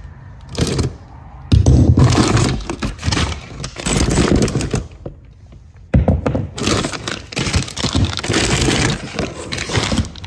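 Loose metal bicycle parts, mostly derailleurs, shifters and cables, clattering and rattling together in a cardboard box as a hand rummages through them for a shifter. The clatter comes in two spells, with a brief lull about five seconds in.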